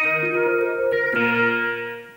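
Ensoniq ESQ-1 wavetable synthesizer playing a bright, clean patch from its sound cartridge. Held notes and chords change pitch a few times, then die away near the end.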